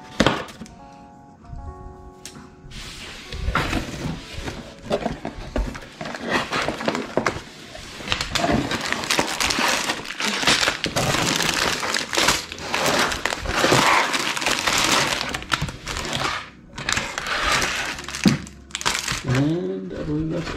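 Soft background music, then from about three seconds in, the crinkle and rustle of a cardboard Lego box being opened and sealed plastic bags of bricks being pulled out and set down, with knocks and cracks of handling.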